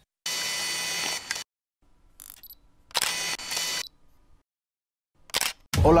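Camera sound effects for an animated lens: two mechanical whirs of about a second each, a fainter short one between them, and a sharp click about five seconds in. A man's voice starts at the very end.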